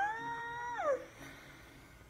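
A drawn-out, high-pitched vocal cry, held on one pitch and then sliding down, ending about a second in.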